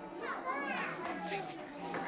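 Young children chattering and calling out at play, several small voices overlapping.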